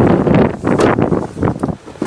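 Wind and handling noise on a handheld camera's microphone: an irregular, loud rumble that surges and dips several times.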